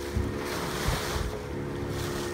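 Wind buffeting the microphone over the hiss of choppy sea water from aboard a small sailing dhow, with a faint steady hum underneath.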